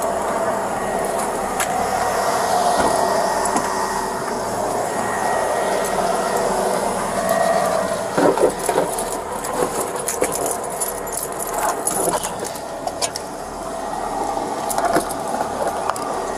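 Steady hum of an idling police patrol SUV. From about halfway through there is a run of rustling, knocks and metal clinks as a handcuffed person is seated in its back seat.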